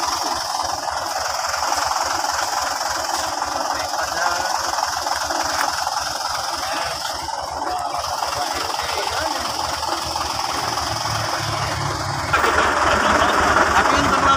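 A heavy truck's diesel engine running steadily at idle. About twelve seconds in, the sound turns suddenly louder and brighter.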